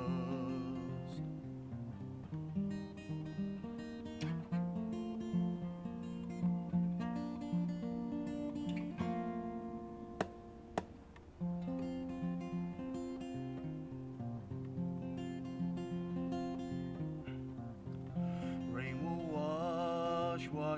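Fingerpicked acoustic guitar playing an instrumental passage between sung lines of a folk song, with a male singing voice trailing off at the start and coming back in near the end. A single sharp tap sounds about halfway through.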